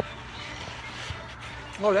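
A single sharp click at the very start, then faint background music over steady room noise.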